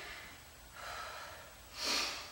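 A woman breathing with effort while lifting dumbbells: a soft breath about a second in, then a sharper, louder breath near the end.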